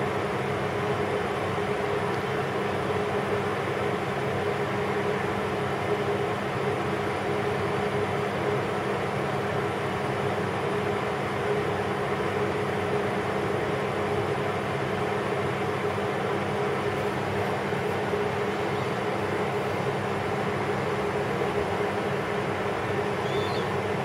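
A steady machine hum with a few held tones under a hiss, unchanging throughout: the background noise of the kitchen, like a running fan or appliance.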